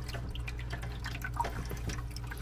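Small resin reptile-enclosure waterfall (an older ExoTerra model) running: water trickling and dripping in an irregular patter over a steady low hum.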